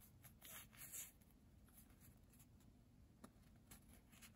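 Faint rustle of Pokémon trading cards sliding against each other as a fanned hand of cards is shuffled through, a few soft strokes in the first second. Then near silence with a couple of light ticks.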